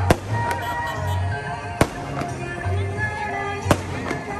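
Aerial fireworks bursting: several sharp bangs, the loudest right at the start, about two seconds in and near the end, over continuous music.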